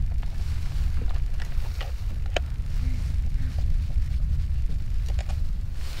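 Steady low rumble of wind on the microphone, with a few faint clicks from a camera and telephoto scope being handled on their metal mounting plate; the sharpest click comes about two and a half seconds in.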